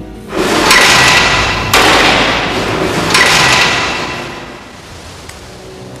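Three loud metallic-sounding strikes, about a second apart, each followed by a dense ringing wash that fades away over the last couple of seconds.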